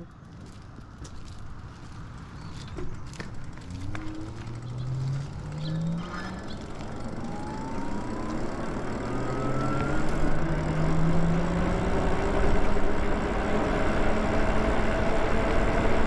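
Lyric Graffiti electric bike's motor whining, rising in pitch in two climbs as the bike pulls away and gathers speed. Wind and tyre noise grow steadily louder underneath.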